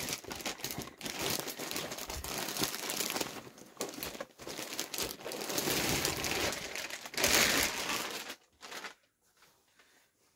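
Clear plastic packaging crinkling and rustling as a vacuum-packed padded baby nest is pulled out of its bag and expands. The crinkling is dense and irregular, then stops about eight seconds in.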